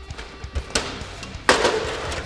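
Background music, with a single sharp tick a little under a second in. About one and a half seconds in comes a sudden loud clatter and rustle of an aluminium foil food tray being handled.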